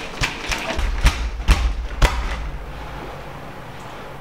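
Five sharp thuds in the first two seconds over a brief low rumble, dying away to a faint steady hum.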